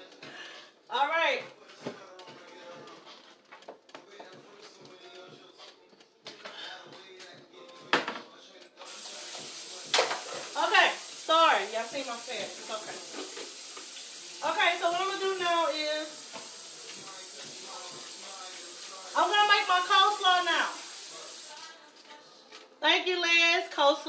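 Kitchen sink tap running, turned on about nine seconds in and shut off about thirteen seconds later, with a woman's voice over it in short stretches.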